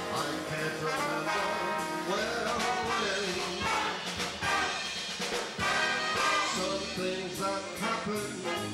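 Live big band playing, with the brass to the fore, under a male crooner singing into a microphone.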